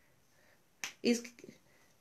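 Near-quiet room tone, broken about a second in by a single short, sharp click, with a brief spoken word right after it.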